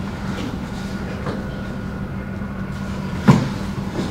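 Thuds and knocks of dancers' bare feet and bodies on a wooden studio floor, with one sharp, loud thump a little over three seconds in, over a steady low hum.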